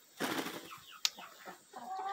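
Hens clucking, with a short rustle near the start and a single sharp click about a second in; a drawn-out hen call begins near the end.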